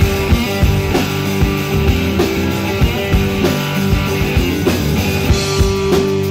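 Live rock band playing an instrumental passage: electric guitar and bass over a drum kit keeping a steady beat.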